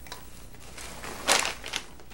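Popcorn poured from a plastic snack bag into a bowl: a soft rustle of popped kernels sliding out, then a short, louder crinkle of the bag a little past halfway.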